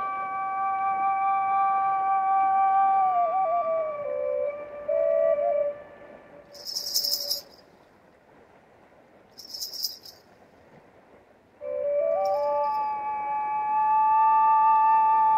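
Dvoyanka, a Bulgarian double flute, playing a long held melody note over a steady drone from its second pipe, stepping down in pitch about 4 s in and breaking off about 6 s in. In the pause come two or three short rattle shakes, and then the flute comes back with the drone and climbs to a held high note near the end.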